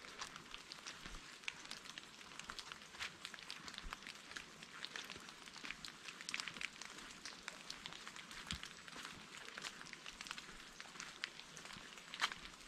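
Faint patter of light rain: many small, irregular ticks of drops.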